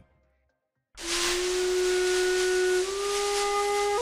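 Silence for about a second, then a breathy flute note held over an airy hiss, stepping up slightly in pitch near the end of the third second and again near the end.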